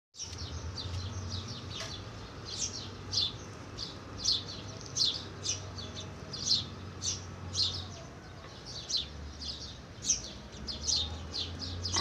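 A small bird chirping over and over, short high chirps roughly two a second, with a low steady hum underneath.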